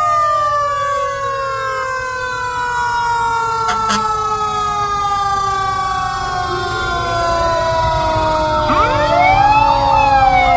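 Fire truck sirens sounding as the apparatus pass: one siren's tone falls slowly as it winds down, and near the end another siren rises and falls. Heavy truck engines rumble underneath.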